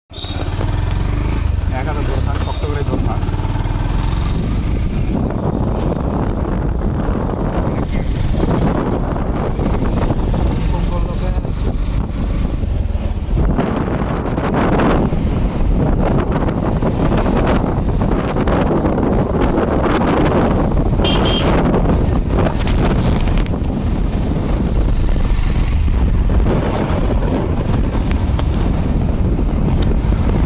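Steady wind rumble on the microphone with a motorcycle engine running underneath, heard from a motorcycle riding along a road.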